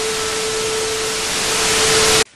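Loud burst of static-like hiss with a steady mid-pitched tone running through it, starting abruptly and cutting off suddenly after about two seconds.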